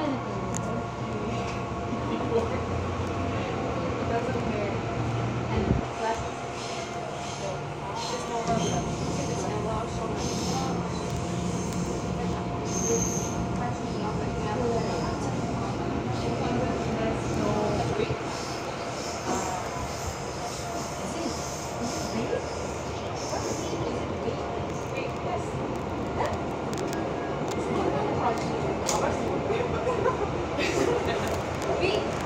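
Seoul Line 2 subway train pulling away and gathering speed, heard from inside the car: the drive tones step up in pitch over the first several seconds, then hold under steady wheel-on-rail running noise.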